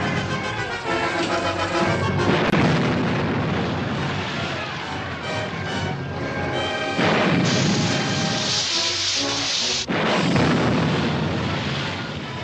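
Film score music over the firing of a submarine's deck gun in battle. There is a sharp crack about two and a half seconds in, and a loud rushing blast from about seven seconds that cuts off suddenly near ten.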